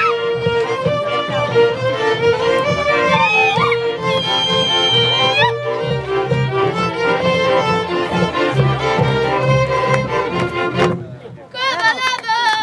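Folk string band of violins and a double bass playing a dance tune. The band stops about a second before the end, and women's voices start singing.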